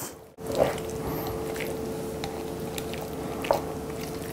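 A carving knife slicing through cooked chicken breast meat, making quiet wet squishing sounds and a few faint clicks, over a steady hum.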